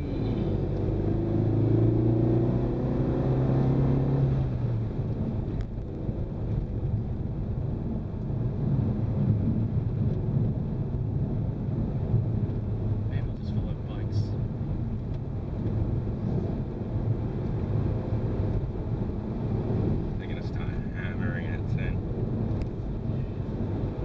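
Renault Mégane RS 250's turbocharged 2.0-litre four-cylinder heard from inside the cabin, pulling up through the revs under acceleration for the first few seconds, then settling into a steady cruise with road and tyre noise.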